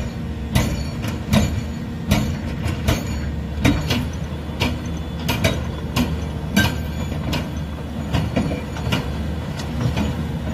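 A JSC ARES A210 hydraulic breaker on a Volvo EC750E excavator is hammering rock. Sharp metallic strikes come at an uneven pace over the steady drone of the excavator's diesel engine.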